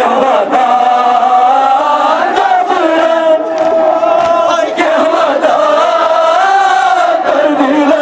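A crowd of men chanting a Kashmiri noha, a Muharram lament, in unison, holding long notes that waver in pitch.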